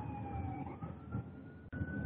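A faint siren wailing in the background: a single tone dips slightly, then rises and holds steady, over the hiss of a telephone-quality line.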